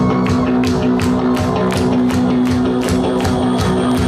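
A live rock band playing an instrumental passage: drum kit keeping a steady beat with regular cymbal strokes over guitar and bass.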